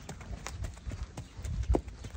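Horse's hooves on dry dirt as it is led at a walk: a few soft, irregularly spaced clops and thuds.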